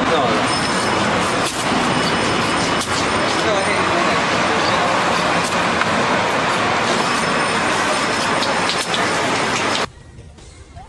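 Busy street noise: steady traffic with indistinct voices, cutting off suddenly near the end.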